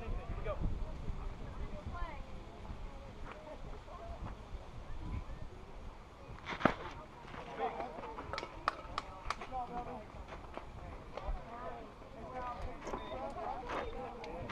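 Spectators at a youth baseball game, chattering and calling faintly. One sharp knock from the play about six and a half seconds in is the loudest sound, and a few smaller sharp clicks follow.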